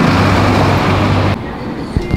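A bus passing close, its engine hum under a loud rush of noise, cut off suddenly about one and a half seconds in.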